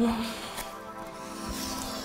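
Soft background music with held, steady tones, under the tail of a woman's spoken word at the very start.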